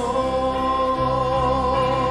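Church worship band with several singers holding a long sung note that wavers slightly, over guitars. A low bass note comes in about halfway through.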